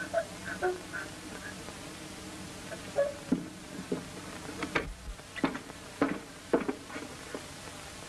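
Steady buzzing hiss of an early-1930s film soundtrack, with a few faint whimpers near the start and then a run of irregular short taps in the second half.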